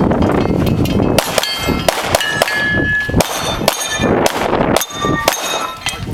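A pistol fired in a quick string of about a dozen shots at steel targets, several hits answered by the clang and brief ring of the steel plates.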